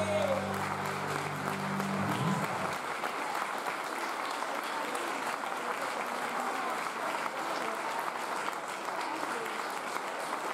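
Audience applauding at the end of a live acoustic song, while the band's last chord on guitars, bass and keyboard rings out and stops about two and a half seconds in.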